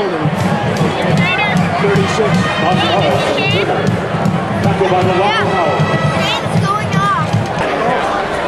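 Football stadium crowd: a steady din of many voices with rising and falling shouts, over music playing.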